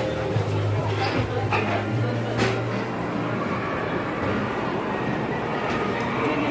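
Busy café background: a low, steady hum for the first three seconds or so, with murmuring voices and a few light clicks.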